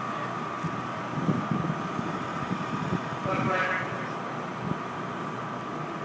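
Indistinct voices over a steady background hum, with a short stretch of voice about three and a half seconds in.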